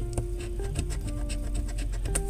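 A coin scraping the coating off a scratch-off lottery ticket in rapid, repeated strokes, over steady background music.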